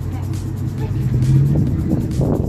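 A car's engine running as it drives close by, its hum growing louder past the middle, over background music.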